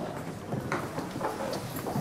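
Faint courtroom room noise: scattered light knocks and clicks in an irregular patter.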